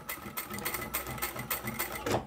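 ProSew single-needle lockstitch sewing machine running steadily, its needle strokes a rapid, even series of clicks, backstitching over several thick folded layers of fabric to reinforce the seam.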